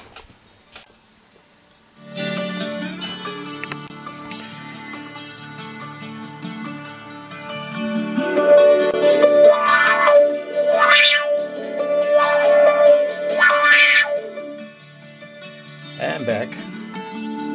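Recorded music played through a 741 op-amp audio filter, heard from a small test-amplifier loudspeaker. The music starts about two seconds in, and from about halfway through the filter's peak is swept up and down twice, giving a wah-wah sound.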